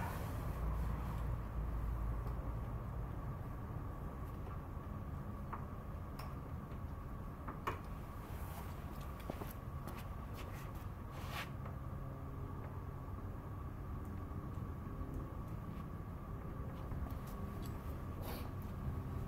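Steady low room hum with a faint steady whine, and a few scattered light clicks and knocks of handling.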